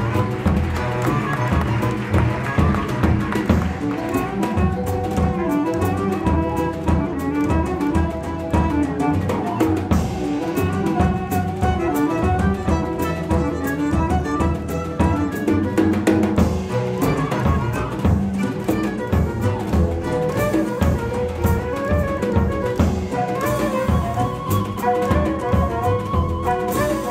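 Instrumental ensemble music, with bowed strings playing melodic lines over drums and percussion at a steady, even level.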